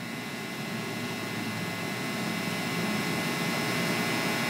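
Steady background hiss with faint high, steady whining tones, slowly growing louder.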